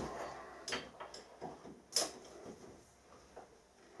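A handful of light metallic clicks and knocks as aluminium jaws are fitted onto a cast-iron bench vise, the sharpest about two seconds in.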